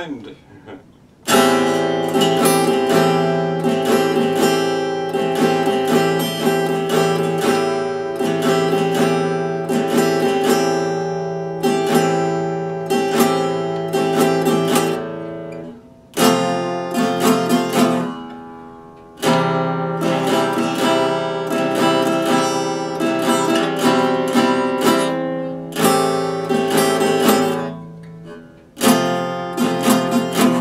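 Epiphone acoustic-electric guitar strummed in chords, a steady strumming rhythm with a few short breaks between passages.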